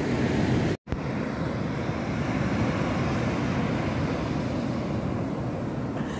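Ocean surf washing onto the beach, a steady rush with wind rumbling on the microphone. The sound cuts out for an instant a little under a second in, then carries on the same.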